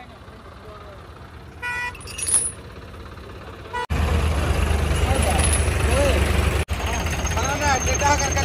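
A short vehicle horn toot about two seconds in. After a cut, a heavy diesel engine idles with a steady low rumble, with men talking over it.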